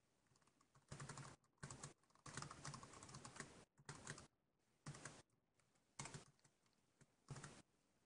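Faint typing on a computer keyboard, in short irregular runs of keystrokes with brief pauses between them.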